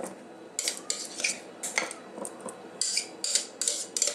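Metal spoon scraping and clinking against a mixing bowl and a ceramic baking dish as thick cheese dip is spooned out, in short irregular strokes that come thickest about three seconds in.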